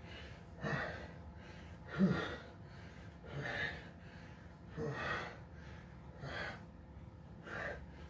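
A man breathing hard from exertion during a dumbbell set: six sharp, gasping breaths in an even rhythm about every second and a half, some with a slight voiced grunt.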